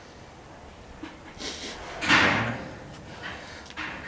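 A brown bear at a metal water trough in its cage making a few short scraping, rushing noises, the loudest about two seconds in.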